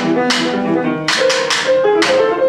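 Grand piano and drum kit playing together: scattered, held piano notes in the middle register against a run of sharp hits on cymbals and drums that ring away, bunched together a little past the middle.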